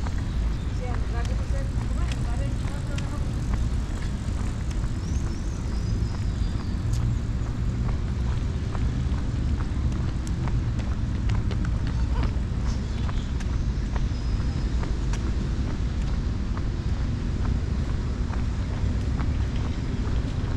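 Outdoor ambience on a walk: a steady low rumble, with people's voices in the background, frequent light clicks, and a few faint short high chirps.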